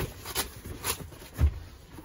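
Soft knocks and rubbing of leather bed cushions being shifted and pressed as a person kneels and moves across them, with a heavier thud about one and a half seconds in.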